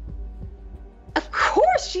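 Quiet background music with a soft beat, then a little over a second in a woman suddenly bursts out laughing.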